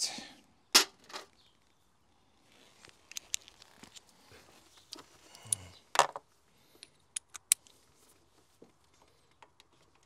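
Scattered sharp metallic clicks and light scraping as a 12 mm wrench is worked onto a grimy thermostat-housing bolt that it at first would not fit over. The loudest clicks come about a second in and about six seconds in.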